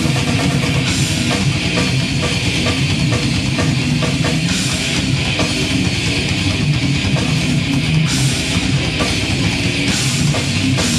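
Heavy metal band playing live: distorted electric guitars over a pounding drum kit, with cymbal crashes every few seconds.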